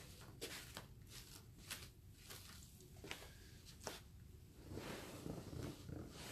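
Faint handling noises in a small room: scattered light clicks and knocks, then a longer rustle near the end, as someone moves about fetching a drink of water.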